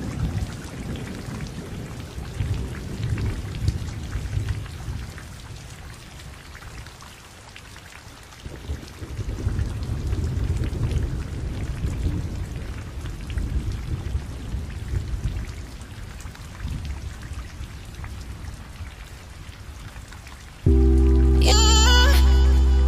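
Water sound effect: a continuous noisy patter with low rumbling swells that rise and fall. Loud music cuts in abruptly near the end.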